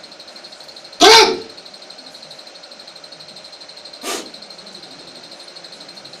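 A sharp, very loud burst of breath or voice right at the microphone about a second in, followed by a much weaker one about three seconds later.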